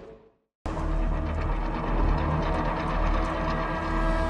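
Dramatic background score for a TV drama. The music fades out to a moment of silence, then a low rumbling drone with held sustained tones cuts in abruptly about half a second in and carries on steadily.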